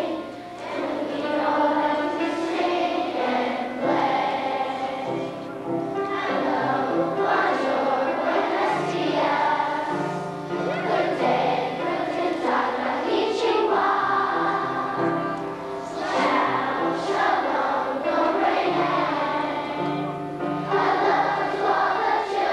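A large group of schoolchildren singing a song together in unison, with steady accompanying notes underneath.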